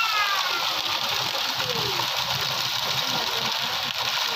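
Heavy rain falling steadily on a village street, a dense, even hiss of downpour.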